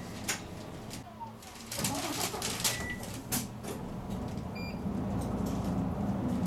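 Inside a city route bus in slow traffic: the bus's diesel engine idles with a steady low hum, with a few sharp clicks and knocks and a couple of brief high beeps. The engine gets louder about halfway through as the bus creeps forward in the queue.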